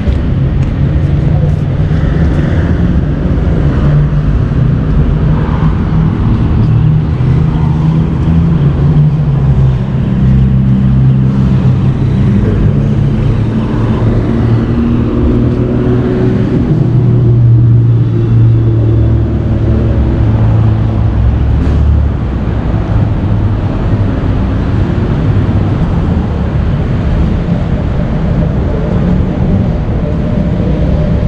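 Road traffic alongside: the engines of passing and idling cars and other vehicles, a loud deep hum whose pitch rises and falls as vehicles move.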